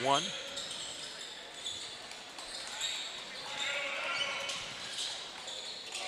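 Basketball game sound in a gym: a ball bouncing on the hardwood court amid high shoe squeaks and background crowd voices, with a commentator's single word at the very start.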